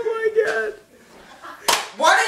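A drawn-out, high-pitched voice for under a second, then a single sharp slap near the end.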